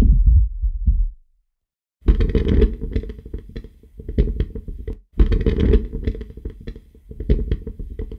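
Close-miked candle-flame recording played back with its effects switched off: a low, fluttering rumble broken by sharp crackles and pops. It opens on the end of the dense, processed version, which cuts off about a second in, and the dry recording then plays twice from the start.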